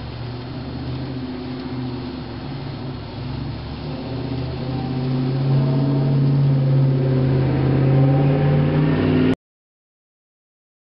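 N-scale model train running on its track, the locomotive's small motor humming steadily with the wheels rolling, growing louder as it approaches, then cutting off suddenly near the end.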